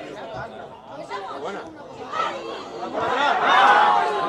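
Chatter and shouting of several voices talking over one another, growing loudest in the last second.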